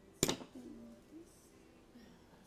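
A single sharp knock about a quarter second in, ringing briefly, followed by a faint murmur of voices.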